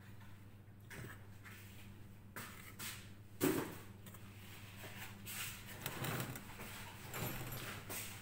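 A metal fork stirring and scraping through carrot cake batter (flour, grated carrot and eggs) in a glass mixing bowl, in irregular scrapes, with one louder knock about three and a half seconds in and busier stirring in the last few seconds.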